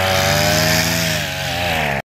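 Petrol brush cutter engine running at high revs while its cutting head works through grass, the pitch dipping slightly about two thirds of the way in.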